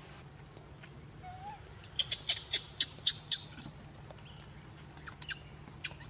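A bird calling: a quick run of short, sharp, high chirps about two seconds in, with a few more near the end.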